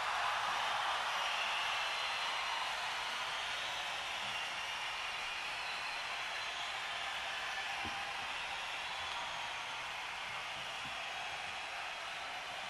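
Steady, even hiss-like noise with no music or pitched sound in it, slowly growing fainter.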